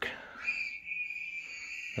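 A pet bird giving one long, steady whistling call that starts about half a second in.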